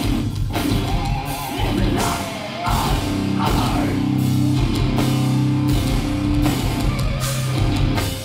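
Live hardcore band playing loud: distorted electric guitars, bass and drum kit with crashing cymbals. About three seconds in, a low chord is held ringing for several seconds over the drums.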